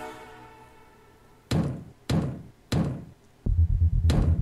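The music-video song cuts off and its last notes fade away. Then come three sharp, evenly spaced knocks, followed near the end by a heavy pulsing bass beat as the electronic music comes back in.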